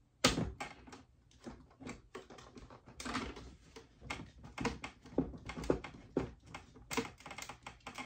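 Plastic carbonating bottle being pushed up and screwed into a SodaStream machine: a run of irregular plastic clicks and knocks as the bottle neck engages the threads, the loudest a moment after the start.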